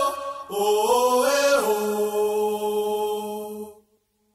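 Sustained wordless vocal chant: after a brief dip, a new held note steps up in pitch, settles on a lower held tone, then fades out shortly before the end.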